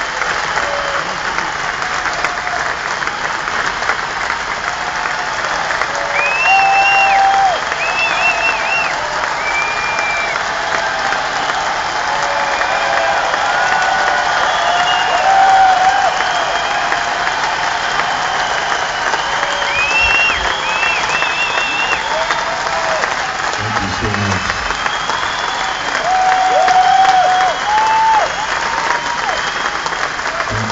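A large concert audience applauding without a break, with whistles and cheers rising above the clapping several times.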